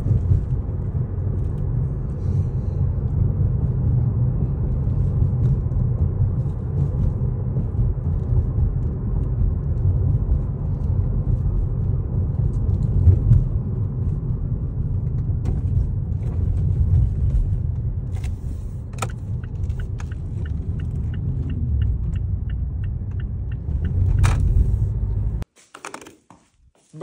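Steady low rumble of a car's road and engine noise heard from inside the cabin while driving. About three-quarters of the way in, a light, regular ticking runs for a few seconds, about three ticks a second, and near the end the sound cuts off suddenly.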